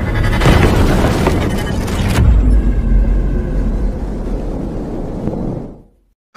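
Cinematic intro sound effects: deep booms and rumble over music, with a strong hit about two seconds in, fading out near the end.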